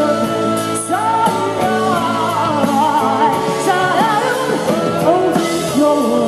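Indie rock band playing live, with a woman singing lead over electric guitars, bass and a drum kit with steady cymbal strokes.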